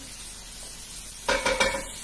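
Vegetables sizzling in a frying pan as they are stirred with a wooden spoon. In the second half there are louder scrapes and knocks of the spoon against the pan.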